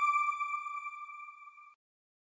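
Closing logo sting of a TV channel: the ringing tail of one bell-like electronic tone, fading steadily and dying out about one and a half seconds in.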